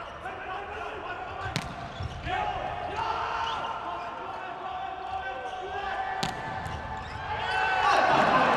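A volleyball struck hard twice, once about a second and a half in and again about six seconds in, over the hum of voices in an indoor arena. Crowd noise swells near the end.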